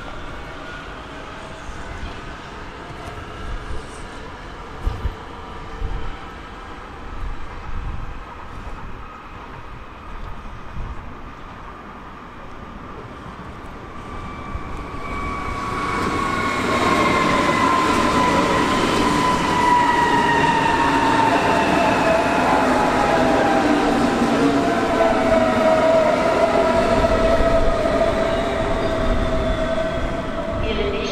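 A DB class 423 S-Bahn electric train coming into the station, its traction motors giving a loud whine of several tones that falls steadily in pitch as it brakes. Before that, about the first half holds only fainter rail noise with a few knocks.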